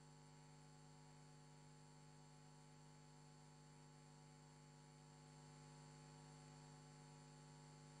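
Near silence with only a faint, steady electrical hum.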